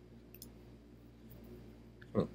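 Faint computer mouse clicks, a quick pair about a third of a second in and a few fainter ones later, over a steady low hum.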